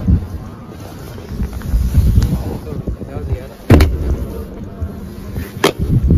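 Handling noise from hands working a car's rear seat: a few sharp clicks and knocks over rustling and rumble, the loudest a click with a thump about four seconds in.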